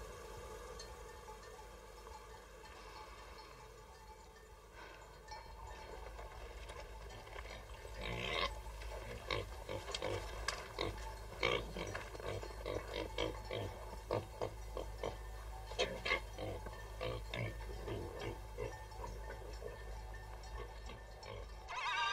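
Faint, irregular grunting of a farm animal, beginning about eight seconds in after a quiet stretch.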